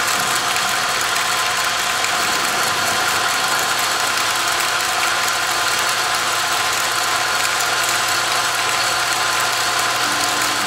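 South Bend 9-inch metal lathe running steadily on its 1/3 HP electric motor: an even mechanical whir from the motor and belt drive, with a constant hum.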